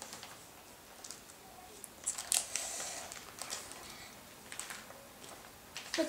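Plastic card-pocket pages of a trading-card binder being opened and turned by hand: several light crinkling rustles, the loudest a little over two seconds in.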